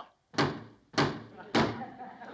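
Pounding on a closed garage door: three heavy blows about half a second apart, each ringing briefly.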